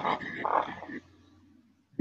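A man's long audible breath out, fading away about a second in, followed by near silence.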